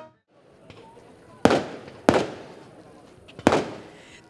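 Fireworks going off: three loud bangs, the first two about half a second apart and the third over a second later, each trailing off in a rolling echo.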